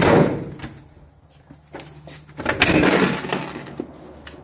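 A door being opened and closed: two loud noises about two and a half seconds apart, each fading out over about half a second.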